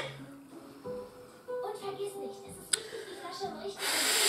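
Soft background music with held notes, playing from a television in the room, with faint voices. There is a sharp click right at the start and another a little under three seconds in.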